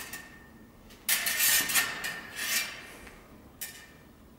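Steel saber blades scraping along each other in binds during thrusts: a sharp clash at the start, then a long grating slide about a second in and shorter ones after it, with a faint ring from the steel.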